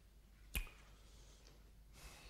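A single sharp click about half a second in, from the button of a handheld pocket voice recorder pressed to stop playback of the recorded interviews.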